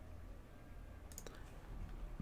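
A few faint computer mouse clicks just over a second in, over a low steady room hum.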